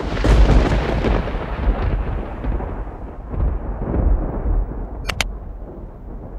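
A deep cinematic boom sound effect that hits suddenly and fades slowly over several seconds, its high end dying away first. Near the end come two quick clicks in a row, like a mouse-click effect.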